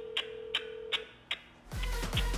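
A phone call heard through a smartphone's speaker: one steady ringing tone lasting about a second, over a light ticking beat. Just before the end a low, buzzy, repeating hold sound starts, the kind described as someone farting in it over and over.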